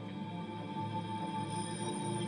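Background music: held sustained tones over a low, pulsing bass note.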